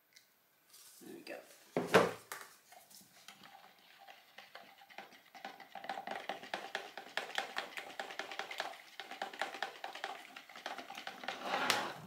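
A large plastic jug set down on a worktop with a knock about two seconds in, then a spatula stirring cold-process soap batter and colour in a small plastic jug, a rapid run of small clicks and scrapes.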